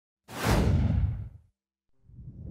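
A single whoosh sound effect with a deep rumble beneath it. It starts suddenly, falls in pitch and dies away within about a second.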